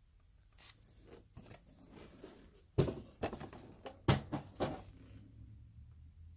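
Handling noise from hands holding and tilting a thick trading card: scattered soft clicks and rustles, with two sharper knocks about three and four seconds in.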